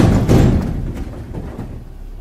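Large boulders sliding out of a tipped dump truck bed and crashing onto the ground, the rumble of the load dying away as the last rocks settle.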